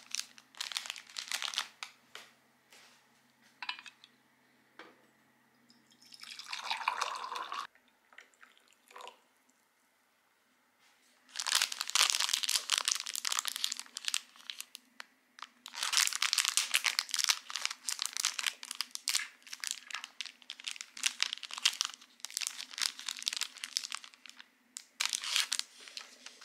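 Clear plastic wrapper of an individually wrapped sandwich cookie crinkling as it is handled and opened, a few scattered crackles at first, then dense bursts with short pauses through the second half.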